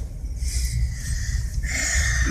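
Steady low rumble of a car's cabin, with two short breathy sounds from the person holding the phone, one about half a second in and one near the end.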